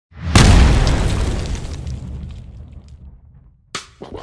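Cinematic boom sound effect for a logo reveal: a deep hit about a third of a second in that dies away slowly over some three seconds, followed by a short sharp hit just before the end.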